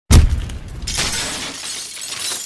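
Logo-intro sound effect: a sudden loud hit with a deep boom, then a long, hissing crash of noise.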